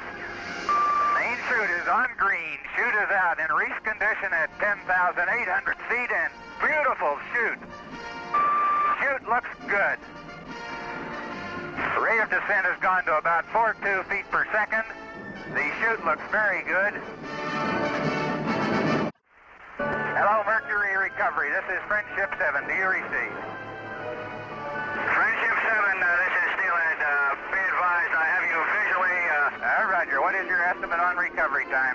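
Dramatic orchestral film score with brass, wavering and continuous. Two short steady beeps sound about a second in and about nine seconds in, and the sound cuts out briefly a little past nineteen seconds.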